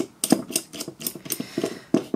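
Knurled threaded retainer cap of a Suzuki A100 carburetor being screwed onto the metal carburetor body by hand over the slide, giving a run of small irregular metallic clicks, a few a second.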